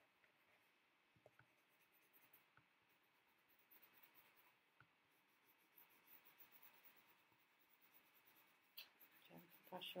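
Faint, irregular scratching of a coloured pencil shading on paper.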